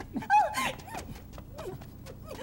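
A woman's wordless vocal cries: one loud, high cry near the start, then shorter gliding cries as two people grab hold of each other.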